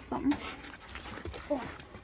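Dog whining: short, pitched whimpers near the start and again about halfway through, over scuffing and rustling.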